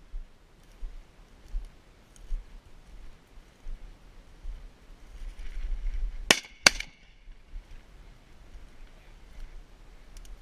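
Two shotgun shots in quick succession, a little past halfway, the second under half a second after the first, each cracking sharply with a short ringing after it. Between them and around them come faint rustles and crunches of walking through dry brush.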